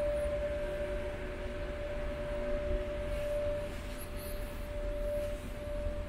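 Ferry interior machinery hum: a steady low rumble with a constant mid-pitched whine held over it.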